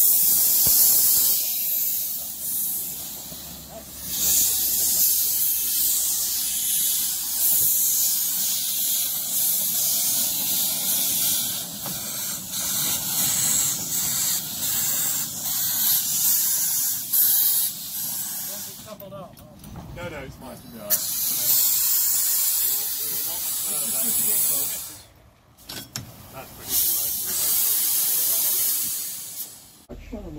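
A small narrow-gauge steam locomotive hissing steam steadily, with two brief breaks in the hiss in the last third.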